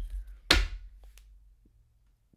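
A single sharp knock about half a second in, preceded by a low rumble, as something is handled on the tabletop.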